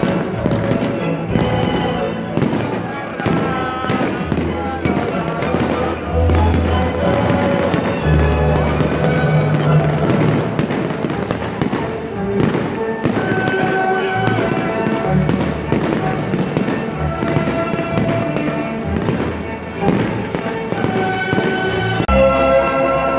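Aerial fireworks going off in rapid, irregular bangs, over loud music and crowd voices.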